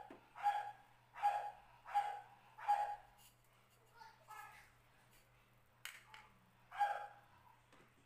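A dog barking: a quick run of five barks about two-thirds of a second apart, then two more spaced out, with a low steady hum underneath.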